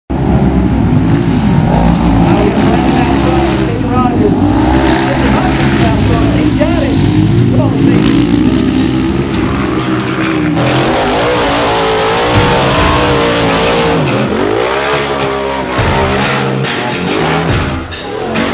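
Off-road race buggy engines revving hard, the pitch rising and falling with the throttle, with voices over them. The sound changes abruptly a little past halfway, where a different vehicle's engine takes over.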